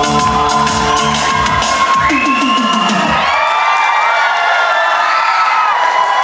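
Tibetan gorshay dance music with a fast, even beat, ending about three seconds in, then an audience cheering and whooping.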